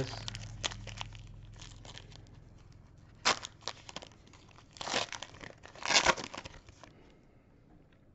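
Foil wrapper of a Panini Chronicles basketball trading-card pack being torn open and crinkled by hand. There are scattered small crackles and three louder rips, at about three, five and six seconds in, and it goes quiet near the end.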